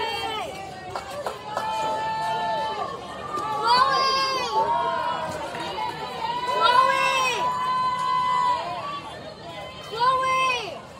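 High-pitched young voices shouting cheers during a softball at-bat, several long drawn-out calls overlapping, loudest about four and seven seconds in.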